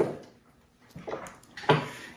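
A short click, then faint scraping and clicking as the screw of a small metal mandrel is turned by hand to fasten an abrasive cleanup wheel.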